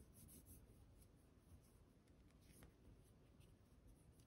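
Very faint rubbing and light handling: a cotton pad wiped over a glass perfume bottle and its metal cap, with a few soft scattered ticks.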